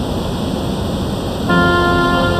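Water pouring over a river weir, a steady rushing that fades in. About one and a half seconds in, music starts over it.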